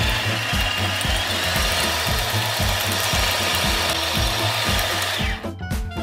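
Electric stand mixer running, a loud even whirr with a steady whine, as it beats a meat paste; the motor cuts off about five seconds in. Background music with a steady beat plays underneath throughout.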